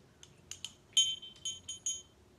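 Cut-glass hand bell rung, its clapper striking once clearly about halfway through and then about three more times in quick succession, each stroke a high, clear ring.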